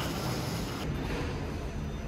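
Terminal hall ambience, then an abrupt cut a little under a second in to outdoor street ambience with a steady low rumble of traffic.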